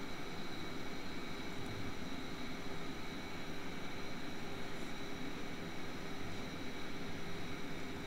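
Steady background noise with no speech: an even hiss with a faint hum and a few thin steady tones running through it, the room tone of the narrator's microphone.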